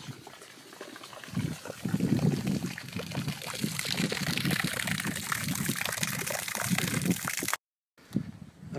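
Spring-fed stream water trickling and splashing along a narrow channel in the rock, a busy, irregular running sound that grows louder about a second and a half in. It cuts off suddenly just before the end.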